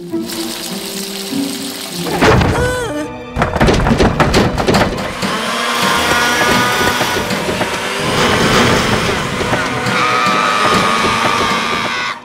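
Cartoon sound effect of a kitchen blender switching on by itself and whirring steadily, its contents churning, from about five seconds in, over suspenseful background music. It is preceded by a rising swoop and a quick run of clattering knocks.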